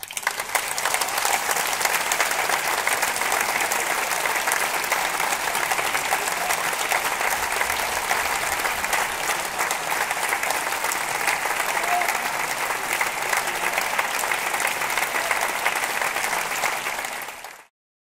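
A large theatre audience applauding steadily, breaking out as soon as the concert band's final note stops and cutting off abruptly near the end.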